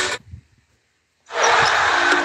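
A guitar music sting cuts off just after the start, then about a second of silence, then the noise of an arena crowd comes in near the end.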